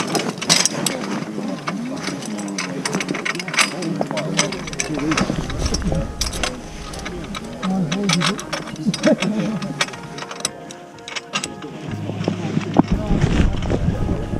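Short metallic clicks and knocks of a rescue stretcher's metal frame being handled at its joints, with indistinct voices in the background.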